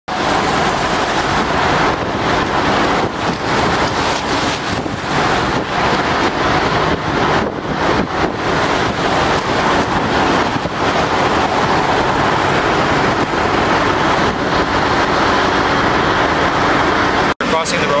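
Road traffic noise: vehicles passing on a wet, slushy road, a loud steady rush that swells and eases. It cuts out abruptly near the end.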